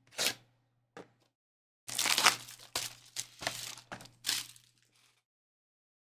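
A cellophane-wrapped trading-card mega box being unwrapped and opened by hand: a couple of short crackles, then about three seconds of crinkling and tearing of plastic wrap and cardboard that stops about a second before the end.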